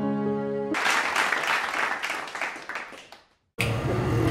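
Background music with held notes, cut off about a second in by a small group clapping; the applause lasts about two and a half seconds and fades out near the end.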